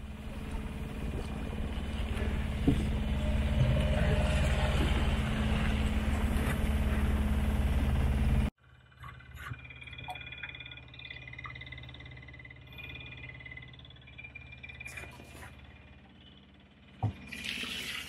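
On-board sound of a small sailing yacht under way: loud rushing water and wind noise over a steady low hum, growing louder, that cuts off abruptly about halfway through. Then a much quieter steady hum with a few short knocks.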